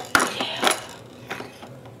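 A few sharp clicks and clatters of hard plastic toy parts on a toddler's activity table, loudest just after the start and then fainter and more spaced.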